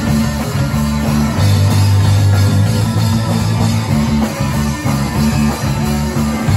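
A punk rock band playing live with electric guitars, bass guitar and a drum kit, loud and continuous, in the opening bars of a song just after the count-in. Heavy low chords change every second or two.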